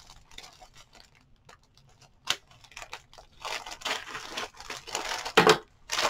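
Thin plastic mailer bag crinkling and rustling as it is handled and opened, in scattered faint crackles that thicken in the second half, with a louder short rip shortly before the end.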